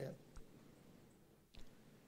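Near silence: room tone after a man's voice trails off at the very start, with two faint clicks, the clearer one about a second and a half in.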